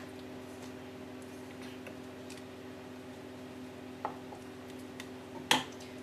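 Wooden spoon stirring thick peanut satay sauce in a stainless steel saucepan: soft squelching with a few light knocks of the spoon against the pan, the sharpest one near the end. A steady hum runs underneath.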